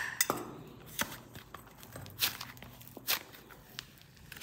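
Hands handling a plastic toy egg and modelling clay: a few sharp plastic clicks and taps spread through, with soft rubbing between them.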